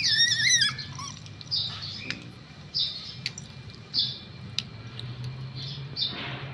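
Young pet otter calling: a high, wavering squeal in the first second, then short high chirps about once a second. It is noisy at feeding time, calling out of hunger for the fish held out to it.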